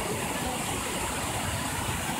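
Small waterfalls cascading over limestone terraces into pools: a steady rushing of water.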